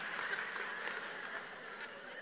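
Audience laughing, dying down gradually after a punchline.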